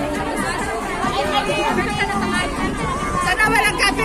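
Several women's voices chattering at once over background music.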